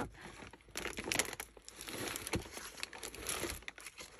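Plastic mailer bag crinkling in irregular crackles as a hand rummages inside it, searching for an item.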